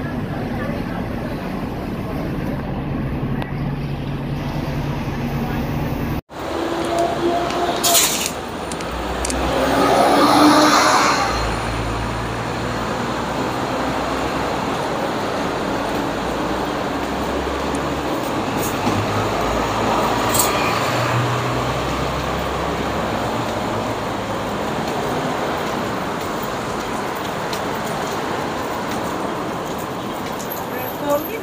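Busy city street traffic: buses and cars running past, with a louder swell as a vehicle passes about ten seconds in, under a murmur of passers-by's voices. The sound cuts out for an instant about six seconds in.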